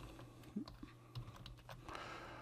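Faint typing on a computer keyboard: scattered single key clicks at an uneven pace, over a faint steady low hum.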